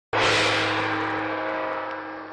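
A single sudden hit that rings on as a steady chord of tones and fades slowly, like a gong-style intro sound effect.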